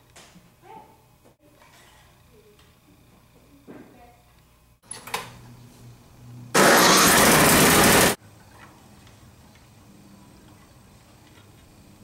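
Snowblower's four-stroke engine starting up: a sharp click, then a loud burst of engine noise lasting about a second and a half that cuts off abruptly.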